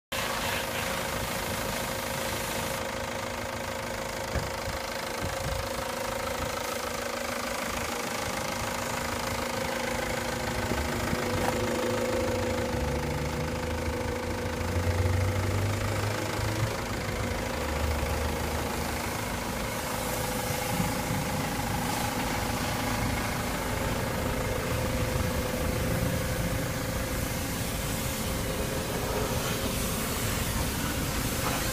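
A 2005 Ford Transit short-wheelbase van's diesel engine idling steadily.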